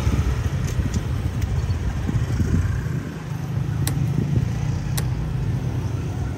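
Motor scooters riding slowly past at close range: a steady low engine rumble. Two sharp clicks about a second apart in the second half.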